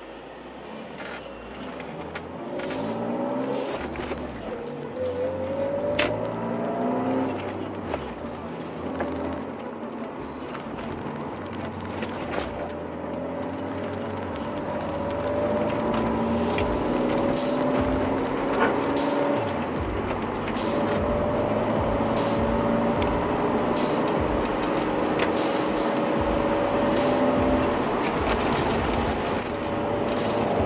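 BMW E46 323ci's straight-six heard from inside the cabin while driving: the engine note climbs in steps as the car pulls away through the gears, then settles into a steady drone with road noise.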